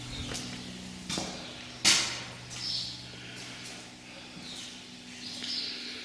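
Footsteps and knocks on entering a building, the loudest a sharp knock about two seconds in, over a steady low hum.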